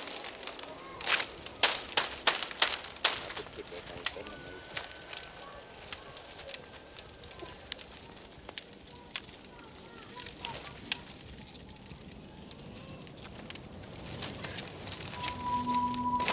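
Dry bamboo crackling and snapping: a cluster of loud snaps between about one and three seconds in, then scattered crackles as the bamboo burns in a small open fire. Soft music comes in near the end.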